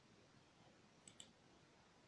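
Two faint clicks in quick succession about a second in, against near silence: a computer mouse being clicked while browsing.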